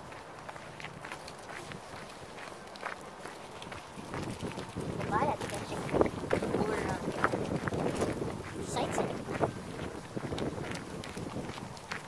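Footsteps crunching on gravel and dry leaves as a person walks with dogs, the crunching growing busier and louder about four seconds in.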